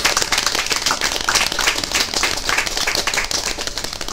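Audience clapping, a steady round of applause at the end of a song.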